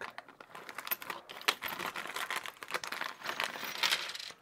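A clear plastic parts bag crinkling as it is handled and opened, with small shock parts clicking and rattling against each other inside it in an irregular patter of small clicks.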